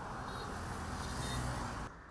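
Road traffic on a highway: a motor vehicle passing, a steady rush of engine hum and tyre noise that cuts off suddenly near the end.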